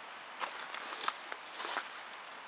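Footsteps crunching on gravel and snow: a few irregular steps.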